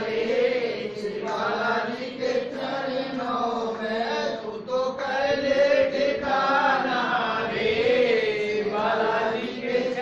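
A group of men chanting a Hindi devotional bhajan together, in long sung phrases that rise and fall with brief breaks between them.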